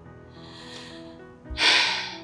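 Soft background music with held notes, over which a woman takes a faint breath about half a second in and then a loud, sharp breath near the end, mid-sentence in an emotional confession.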